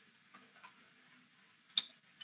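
Low room tone with two tiny ticks and one sharp click near the end.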